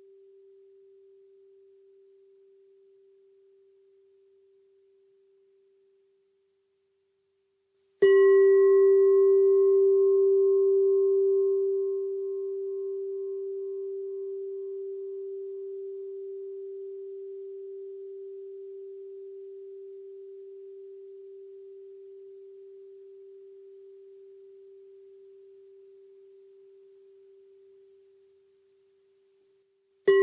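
Singing bowl struck with a wooden striker about eight seconds in, ringing with a steady low hum and brighter overtones that fade within a few seconds, the hum dying away slowly over some twenty seconds. The last of an earlier strike's hum fades out at the start, and the bowl is struck again at the very end.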